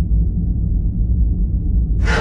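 Low, steady rumbling drone of a spaceship-interior ambience sound effect, with no rises or breaks.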